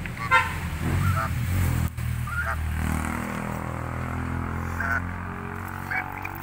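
Domestic geese honking in short single calls, about five, the loudest just after the start. A steady low hum runs underneath.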